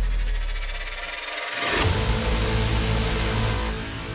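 A racing car engine sound laid over music: a steady low rumble, a sudden loud burst about two seconds in, then the rumbling again.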